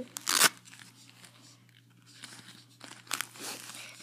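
Handmade duct-tape portfolio being handled: a sharp crinkling rustle of the stiff taped pieces about half a second in, then faint rustling and a couple of small clicks.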